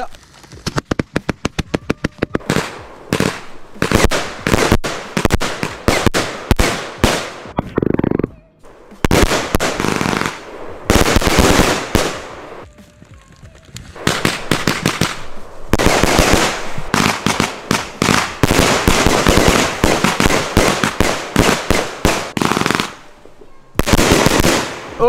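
Three consumer firework batteries (cakes) firing at once: a rapid string of launches and aerial bangs, dense and loud, thinning out twice before picking up again, then stopping abruptly shortly before the end.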